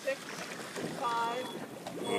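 Steady wind and water noise on the microphone aboard a boat, with a voice calling out briefly about a second in.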